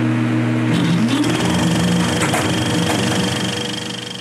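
A buzzing, droning transition sting: several held tones over a hiss that shift in pitch about a second in, then fade out at the end.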